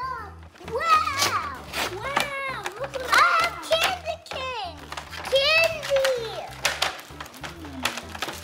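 Young children's high-pitched excited voices and exclamations, over background music with a steady low beat and a few sharp clicks.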